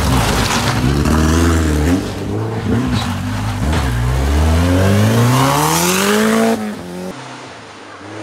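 Caze Subaru off-road rally car engine under hard acceleration, the revs dropping and climbing again several times, then rising steadily for over two seconds. It cuts off abruptly about six and a half seconds in, leaving a fainter engine.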